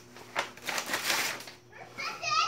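A sharp click, then about a second of rustling and scraping handling noise close to the microphone.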